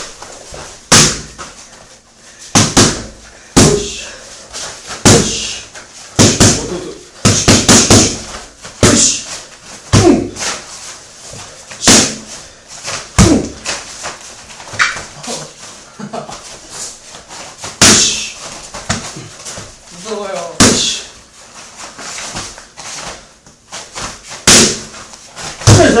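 Boxing-gloved punches and kicks landing on leather focus mitts: sharp smacks, often in quick runs of two or three, a second or two apart.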